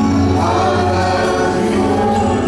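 Live church worship band playing, with several voices singing over guitars, violin and keyboard.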